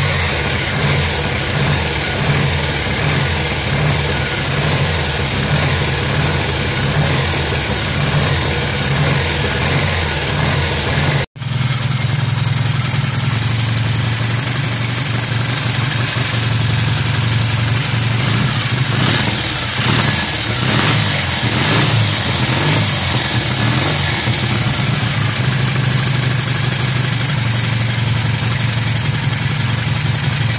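1968 BSA Thunderbolt's 650 cc parallel-twin engine running steadily at idle on a 32 mm Mikuni carburettor fitted in place of its worn Amal, idling nicely. There is a brief break in the sound about a third of the way through.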